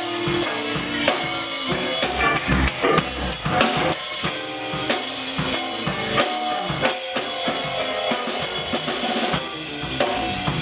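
Live band playing an instrumental tune: electric guitar over a busy drum kit with bass drum and snare, at a steady, loud level.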